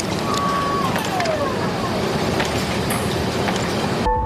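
Steady rush of air from a large inflatable, with a whistle that holds and then slides down in pitch about a second in.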